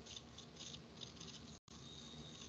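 Near silence: faint room tone with a soft, uneven high hiss, broken by a brief complete dropout about one and a half seconds in.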